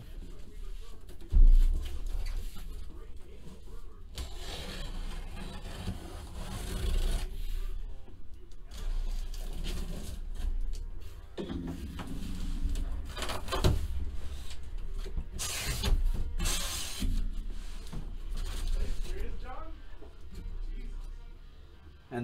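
A sealed corrugated cardboard shipping case being cut and opened by hand: cardboard and packing tape rubbing, tearing and scraping as the flaps are worked open, with a loud thump about a second and a half in.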